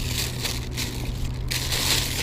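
A paper wrapper being crumpled in the hand, in two bursts of crinkling, the second louder near the end.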